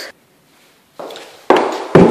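Footsteps on a bare floor: a softer step about a second in, then two loud, sharp steps half a second apart near the end.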